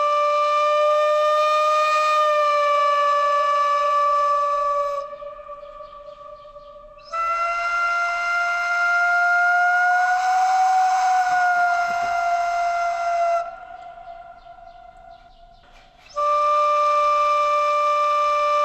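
Maya air-spring aerophone ("Maya clarinet") sounding three long held notes, the middle one a little higher and bending slightly up and back, with short quieter gaps between them. Its tone is nasal like an oboe or clarinet, although it has no reed: it comes from air currents colliding inside the clay body.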